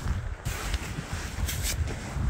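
Wind buffeting the camera's microphone in an uneven rumble, with a short rustle about one and a half seconds in as the camera is handled against a padded jacket.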